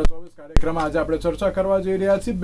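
A man speaking, a news anchor's voice, cut near the start by a short gap between two sharp clicks about half a second apart.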